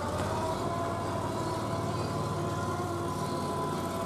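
A stadium siren sounding one long, steady tone that comes up to pitch at the very start and holds.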